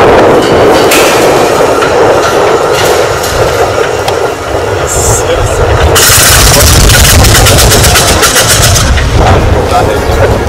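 Napier Sabre H-24 aircraft engine during a ground startup, running loud with a dense low rumble. Between about six and nine seconds in it turns harsher, with a rapid, rattling pulse.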